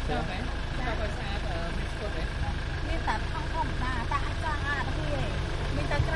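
Quiet conversation between a stall vendor and her customers, the vendor speaking, over a steady low rumble.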